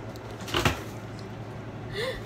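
A single short knock about half a second in, of the kind made by kitchen handling such as a cupboard door or a pot being set down, over a steady low hum.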